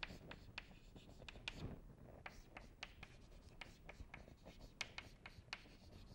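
Chalk writing on a chalkboard: faint, irregular taps and short scratches as letters are stroked onto the board.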